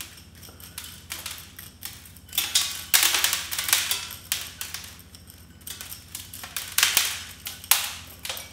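Pointed metal root tool scraping and raking granular bonsai soil out of a small shinpaku juniper's root ball, in irregular gritty strokes. The strokes come thickest in a loud cluster about three seconds in and again near the end.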